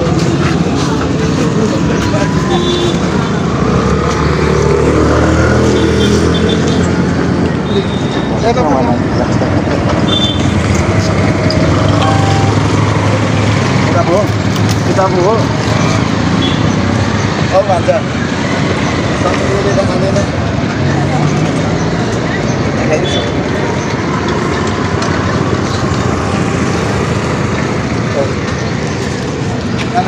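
Street ambience: a steady rumble of road traffic with people talking over it.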